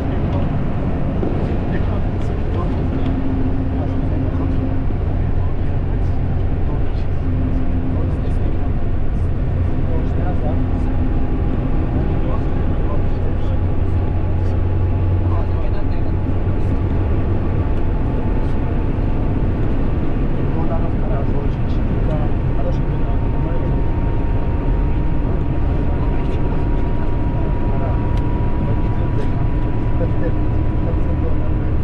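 Steady road noise heard inside a car at highway speed: a continuous low rumble of tyres and engine. A faint thin tone slowly rises in pitch through the second half.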